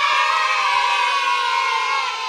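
A single held musical chord, dropped into the edit as a sound effect, its pitch sagging slightly and starting to fade near the end.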